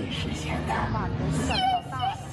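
Character voices from a costumed show. In the last half-second a high-pitched, cartoonish voice slides up and down in pitch, with faint music underneath.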